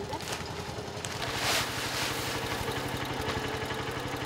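Small farm tractor engine idling steadily. About a second and a half in comes a brief rustling hiss of granular fertilizer being poured from a sack.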